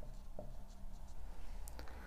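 Marker pen writing a word on a whiteboard: faint, short strokes of the tip on the board.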